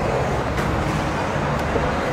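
Steady city street traffic noise: a continuous rumble of passing vehicles.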